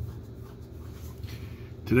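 Low steady hum with faint rustling, as of clothing rubbing while a seated man shifts his arms; a man's voice starts at the very end.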